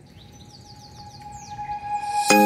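A quick series of short, falling bird chirps over a faint held note, with background music swelling back in near the end.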